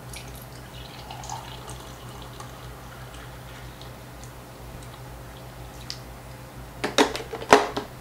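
Hot coffee poured from a glass coffee-maker carafe into a travel mug, a faint trickle of liquid as the mug overflows and coffee splashes onto the table. Near the end come a few sharp knocks as the carafe is set back onto the coffee maker.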